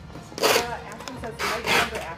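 Sheets of printer paper rustling as they are handled, in two brief bursts about half a second and a second and a half in.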